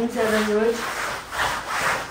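Broom bristles scraping across a hard floor in repeated sweeping strokes, about three of them.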